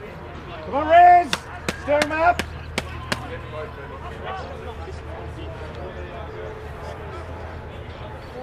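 A loud shout near the microphone that rises then falls in pitch, then a second shorter shout, over a quick run of about seven sharp claps spread across two seconds. A low steady hum runs underneath.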